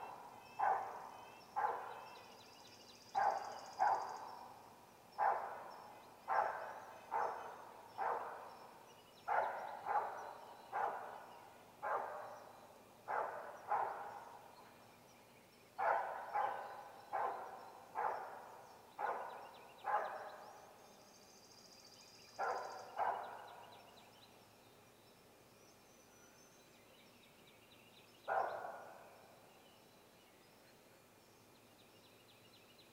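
A series of loud, harsh animal calls, often in pairs, coming about once a second, then a pause and one last call near the end. Faint high bird chirps sound in the background.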